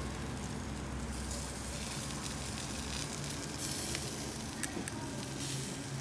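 Ground-pork skewers sizzling on a wire grill: a steady hiss with a couple of sharp pops about two-thirds of the way through.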